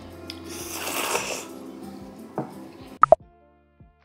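A noodle slurp about a second in, over soft background music. Near the end come two quick, sharp pops.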